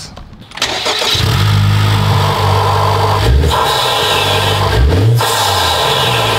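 Honda Civic Type R FL5's turbocharged 2.0-litre four-cylinder engine starting with the hood open, catching about half a second in and settling to a fast idle, then revved in short blips about three and five seconds in. It is breathing through the stock airbox with a drop-in filter, and it is pretty loud.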